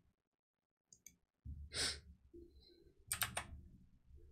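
A person's long sigh-like exhale about two seconds in, then a quick cluster of sharp clicks a second later.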